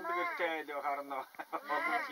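Women talking in Mongolian, voices rising and falling in quick back-and-forth conversation.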